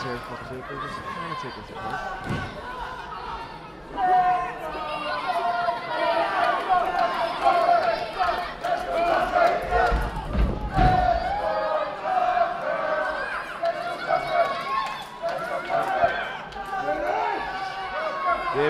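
Wrestling crowd voices shouting and calling out, with a heavy thud of a body hitting the wrestling ring about ten seconds in, and a lighter thud earlier.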